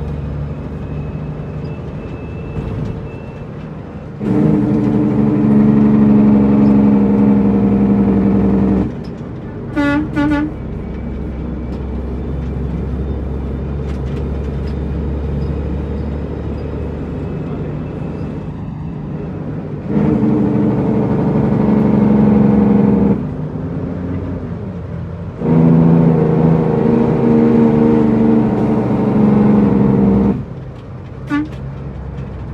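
International 9900i truck's diesel engine heard from inside the cab, pulling hard in three stretches of several seconds and dropping back between them as the driver works through the gears. Two short horn toots about ten seconds in.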